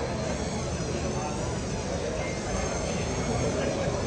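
Cordless drill with a paddle mixer running in a plastic bucket, stirring casting compound, its whine rising and falling over the first few seconds, with a murmur of onlookers behind it.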